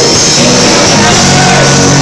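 Small rock band playing live and loud: acoustic and electric guitars over a drum kit, with a voice over the band.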